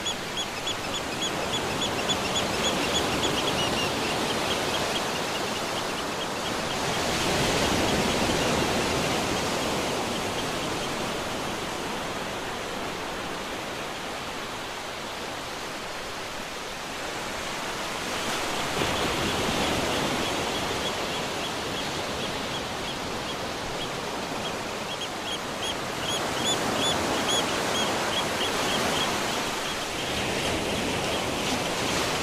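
Ocean surf washing up the beach, a steady rush that swells and fades several times as waves break, with a faint, rapid high chirping at the start and again near the end.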